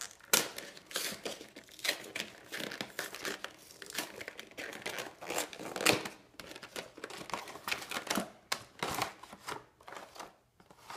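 Cardboard Pokémon trading-card collection box being opened by hand: its flaps and inner tray scraping and rustling in many short, irregular bursts.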